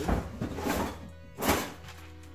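Kitchen handling noises: rustling and knocking as a box of parchment paper is taken up and unrolled, with a sharp thunk about one and a half seconds in.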